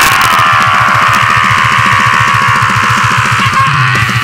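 Death metal playing: heavily distorted guitars over fast, even drumming at about eight to ten beats a second.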